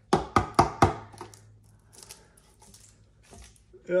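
Four quick, sharp knocks in under a second as a hard plastic-cased electric unicycle battery pack is handled, followed by quieter handling and rustling.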